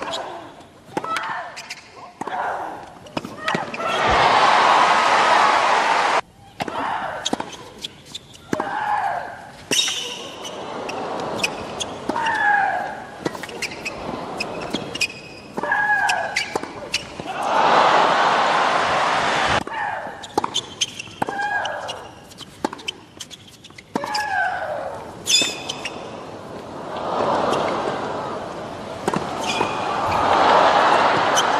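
Tennis rallies: a sharp pop each time a racquet hits the ball, with the players' loud grunts falling in pitch on their shots. Three bursts of crowd applause and cheering come after points are won, about four seconds in, past halfway and near the end.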